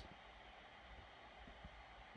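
Near silence: faint steady hiss of room tone, with one faint tick a little past the middle.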